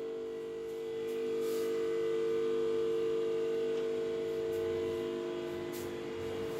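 A steady hum of several held tones, the strongest mid-pitched, swelling slightly in the middle and easing off near the end.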